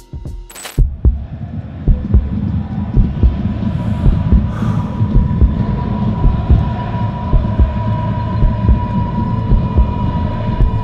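Cinematic sound design: a few beats of music give way under a second in to a loud, low, rumbling drone full of deep irregular thumps like a heartbeat, with a steady high ringing tone that grows stronger from about halfway.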